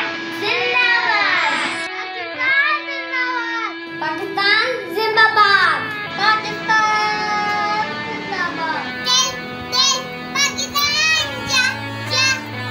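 Children singing over backing music, clip after clip, with the voices changing along the way. Near the end the singing is higher-pitched and more rhythmic.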